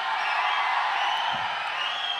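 A large crowd cheering and shouting, a dense, steady mass of many voices with no single voice standing out.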